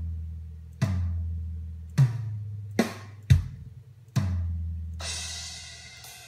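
EZdrummer 2 software drum samples being played as single test hits. There are five separate drum strikes at uneven gaps, each with a long, low, booming ring that dies away, then a cymbal crash about five seconds in.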